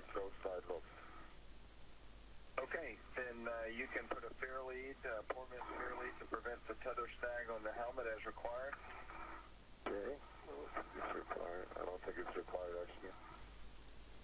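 Men's voices over a narrow-band spacewalk radio link, talking in several stretches with short pauses, over a steady low hum.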